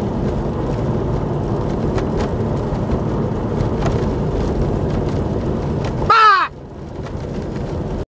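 Jeep driving on a gravel dirt road: steady engine and tyre noise with a few light knocks. About six seconds in, a short, loud squeal falls in pitch, and the road noise then drops sharply.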